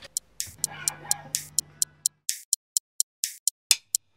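Drumsticks ticking out a quick, steady rhythm of short, light clicks, about four to five a second, some ringing briefly, as the drummer leads in alone before the rest of the band.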